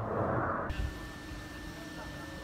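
Steady mechanical drone with a thin high tone, typical of an electric blower inflating a pneumatic tent. It opens with a brief rush of noise that stops abruptly under a second in.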